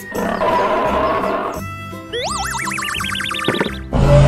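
A cartoon sound effect over children's background music. After a rough, noisy first second and a half, a warbling whistle-like tone glides upward in a wobble through the second half, like a comic 'boing'.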